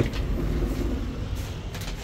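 A steady low rumble with a faint haze of noise above it, and two faint clicks late on.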